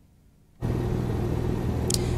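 Dead silence for about half a second, then a steady low outdoor rumble with a faint hum underneath, ending in a brief click.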